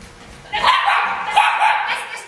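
A dog barking in a rapid run of barks, starting about half a second in, while running an agility course.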